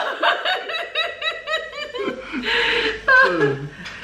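A woman and a man laughing: a quick run of chuckles, about five a second, then a breathy burst of laughter and a falling squeal near the end.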